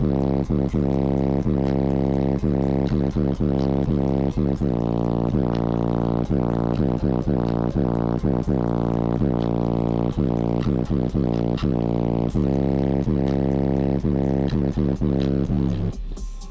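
Bass-heavy electronic music with a bass line of short repeated notes, played through a car stereo with two Sundown Audio XV3 15-inch subwoofers on a Ruthless Audio 10k amplifier, heard from inside the cabin.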